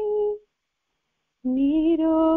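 A single voice sings long held notes of a slow song. The first note fades out just after the start, and after about a second of silence a new note begins with a slight upward slide.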